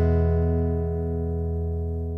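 Backing-track music: the last strummed guitar chord of the song held and ringing out, slowly fading.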